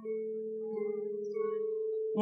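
Electronic keyboard holding a steady low note together with its octave, a fast waver in the tone coming in about halfway through.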